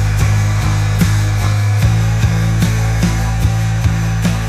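Instrumental passage of an AI-generated (Suno) late-90s-style alt-rock track: heavily distorted guitar and bass hold low chords over drum hits about two and a half a second, with no vocals. The low chord changes near the middle.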